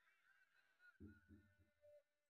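Near silence: room tone. About a second in there is a faint, brief low sound of three or four quick pulses.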